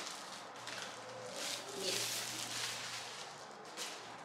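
Plastic wrapping crinkling and rustling in several uneven swells as a packed part is unwrapped and handled.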